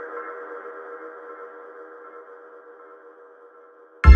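Breakdown of an electronic techno track: a held synthesizer chord with no beat and no bass, slowly fading away.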